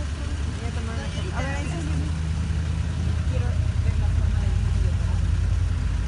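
A vehicle engine idling, a steady low hum that grows louder in the second half.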